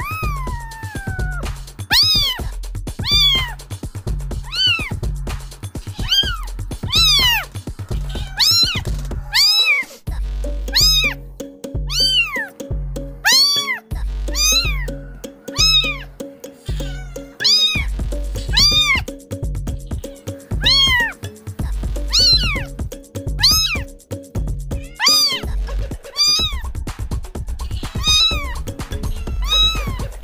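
Kitten meows, short and high with a rise and fall in pitch, repeating about once a second over background music with a pulsing bass beat; a tune of held notes joins the beat from about a third of the way in and drops out near the end.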